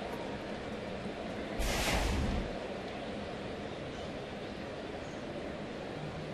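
Steady murmur of a baseball stadium crowd, with a brief louder rush of noise a little under two seconds in.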